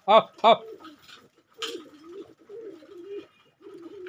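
A man calls 'aa, aa' twice to his pigeons, then a domestic pigeon coos: a low, wavering call lasting about two seconds.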